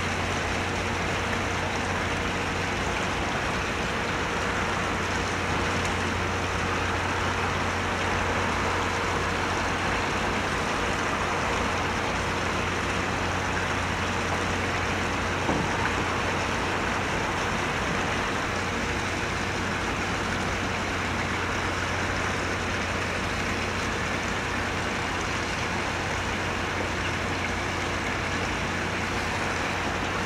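A steady machinery hum with a broad rushing noise, unchanging throughout, with one brief knock about halfway through.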